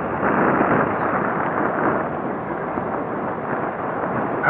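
Steady rush of wind over the camera microphone with tyre noise on pavement, as a Honda PA50II Hobbit moped coasts downhill with its engine off.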